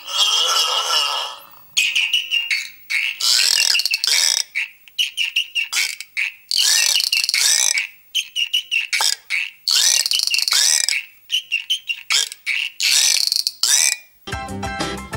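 Home-made cup roarer played in rhythm: a rosined string squeaking in the groove of a wooden dowel, the squeak amplified by the tin can tied to its end. It makes a run of loud squeaks and squawks, some short, some held longer, bending up and down in pitch.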